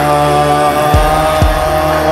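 Instrumental rap beat with no vocals: a sustained synth note over steady deep bass, with two deep bass hits that drop in pitch about a second in, half a second apart.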